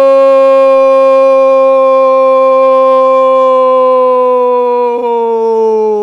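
A male football commentator's long, held goal cry, "gooool", shouted in Portuguese: one very loud, sustained note that holds nearly steady and slowly sinks in pitch over the last second or two.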